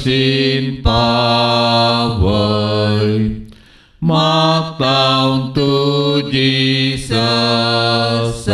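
Unaccompanied devotional singing in long, held notes, with a short break about three and a half seconds in before the singing starts again.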